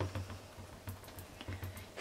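Faint, irregular light taps and clicks as a foam ink blending tool is dabbed onto a dye ink pad to load it with ink.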